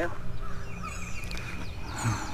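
Wild birds calling: several high, quick, downward-slurred chirps from about halfway in, with a faint steady tone beside them and a low rumble beneath.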